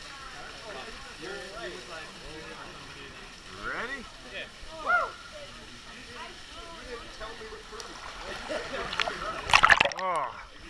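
Water splashing loudly right at the microphone near the end as a swimmer strokes through the pool. Before that, indistinct voices of other people, with a couple of louder calls about four and five seconds in.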